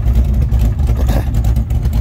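Fox-body Ford Mustang's engine idling steadily with a loud, pulsing exhaust note, the throttle not yet pressed for the two-step.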